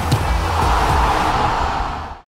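Short edited music transition sting: a dense swelling whoosh with a low rumble underneath, building to a peak about a second in and fading near the end.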